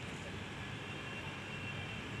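Steady, fairly quiet outdoor background noise: a low rumble with a light hiss above it, and no distinct events.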